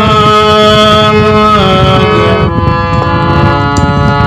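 A damaged harmonium playing held reed chords that step to new notes about halfway through, over a loud rough rushing noise underneath.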